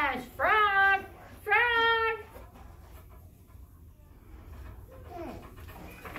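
Young children's voices giving two drawn-out, high-pitched vocal calls without clear words in the first two seconds, followed by a low classroom murmur.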